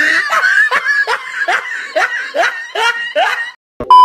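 A child laughing hard in a run of short, rising bursts, about two to three a second, which breaks off near the end. Just before the end a loud, steady test-tone beep starts.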